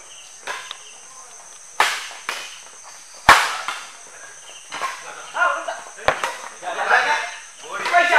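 Badminton rackets hitting the shuttlecock in a fast doubles rally: about half a dozen sharp, irregularly spaced smacks, the loudest about three seconds in. Player shouts come in over the second half.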